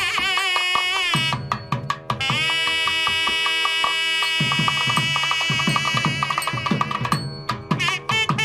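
Nadaswaram and thavil temple wedding music: the double-reed horn plays an ornamented, wavering melody, with a long held note about two seconds in, over steady beats of the thavil drum.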